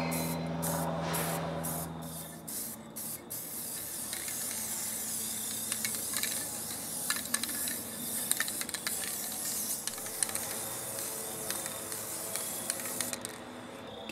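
Aerosol spray can of green paint hissing as it is sprayed onto the loader arm's steel. It goes in several short bursts over the first few seconds, then in one long continuous spray that stops shortly before the end.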